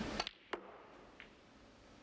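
Snooker balls clicking: a sharp click of cue on ball, then a second click a third of a second later as ball strikes ball, with a faint knock about a second in.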